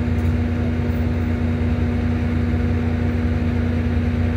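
A vehicle engine idling steadily: an even low hum with a constant higher tone over it.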